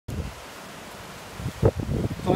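Wind rumbling on a phone microphone: a steady low rumble, with a sharp louder knock a little past one and a half seconds.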